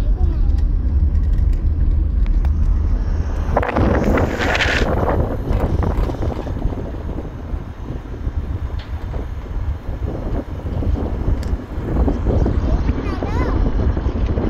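Wind buffeting the microphone over the steady low rumble of a moving vehicle, with a brief louder rush of noise about four seconds in.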